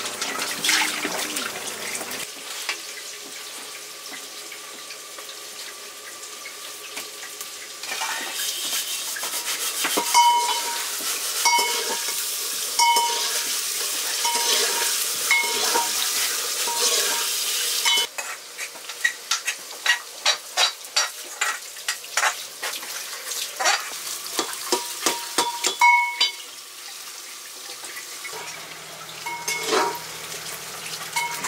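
Vegetables frying in a metal pot over a wood fire, sizzling, while a long-handled spoon stirs them and clinks and scrapes against the pot many times. Briefly at the start, water runs from a tap as a pot is washed.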